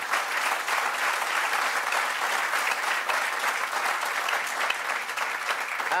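Audience applauding.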